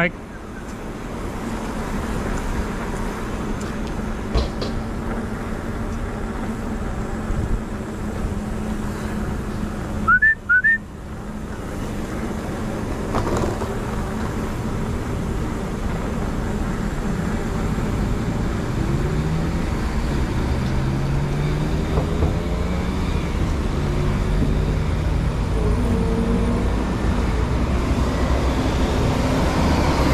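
Road traffic and wind noise heard from a moving bicycle. Vehicle engines rise in pitch as they pull away in the second half. Two short high chirps sound about ten seconds in.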